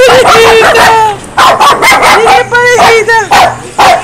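A dog barking and yipping excitedly in a run of short, high-pitched calls, several a second with brief gaps between them.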